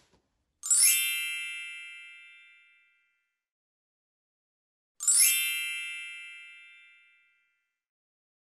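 A shimmering magic-sparkle chime sound effect, played twice about four seconds apart: each time a quick upward run of bright bell-like tones that rings on and fades out over about two seconds.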